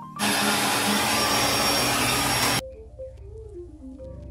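Hair dryer blowing loudly for about two and a half seconds, starting and stopping abruptly, then soft background music with a gentle melody.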